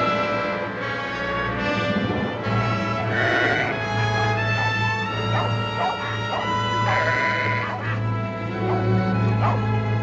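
Orchestral film score plays throughout. Over it, a flock of sheep bleats, with short wavering calls coming again and again.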